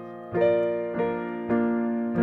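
Digital piano playing the verse of a song: three notes or chords struck in turn, each ringing on and fading.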